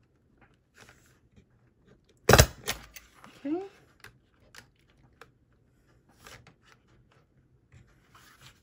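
A handheld stapler fires once about two seconds in, a sharp snap as the staple goes through a stack of folded paper pages, with a smaller click just after. Light paper handling and rustling follows.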